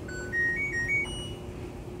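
LG top-load washing machine's power-on chime: a short tune of about six electronic beeps that steps up and down and ends highest, lasting about a second and a half.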